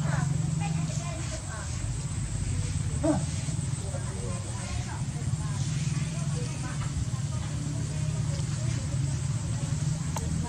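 A steady low hum with faint, indistinct voices over it; a brief louder sound about three seconds in.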